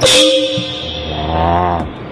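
A pair of Hella Supertone electric car horns sounding one loud two-tone blast that starts suddenly and holds for nearly two seconds, with a voice briefly heard over it in the second half.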